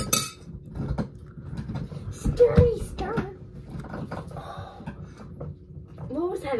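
Spoon clinking against a mug while stirring creamer into tea, a few light clinks near the start, then short vocal sounds.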